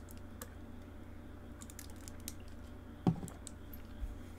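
Scattered faint clicks over a low steady hum, with one louder short knock about three seconds in.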